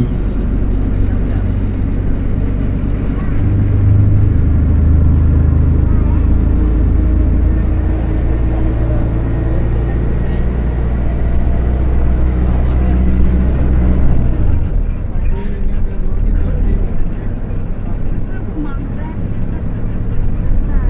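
Tour bus engine running as the bus drives along, heard from inside the cabin. The low engine note grows stronger a few seconds in and eases off about three-quarters of the way through.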